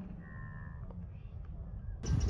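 A bird calling once near the start, a short call of about half a second, over a faint low outdoor rumble.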